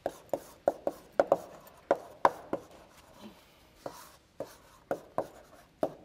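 Chalk writing on a blackboard: a quick series of sharp taps and short scratchy strokes, a few a second, as letters are chalked in, with a brief lull about three seconds in.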